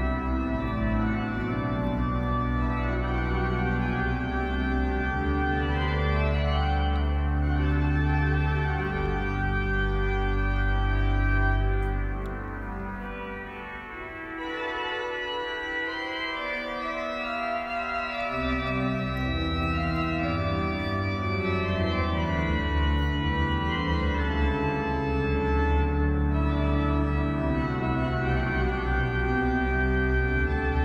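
Pipe organ music: slow, sustained chords over deep pedal bass notes. About halfway through the bass drops out and the music quietens for a few seconds, then the low notes come back in.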